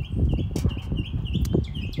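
A small bird chirping in quick repeated notes, about five a second, over the rustle and a few sharp clicks of hands pulling rubber vacuum lines off a car engine's intake.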